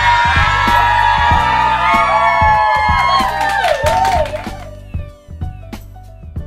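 A group of people cheering and whooping together over background music with a steady bass line; the cheering fades out about four and a half seconds in, leaving only the quieter music.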